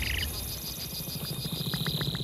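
Insect ambience of a film soundtrack: a high, even insect trill of about ten pulses a second over a low rumble, with a short chirp right at the start. The trill stops a little after a second in, and a few quick clicks and a thin high tone follow near the end.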